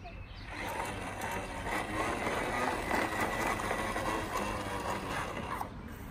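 Toy bubble lawnmower's mechanism running as it is pushed over grass: a steady mechanical whirr with rapid clicking. It drops away shortly before the end.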